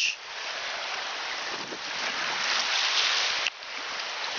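Steady rushing of small waves washing on the shore, mixed with wind across the microphone. It swells a little past halfway and drops off sharply near the end.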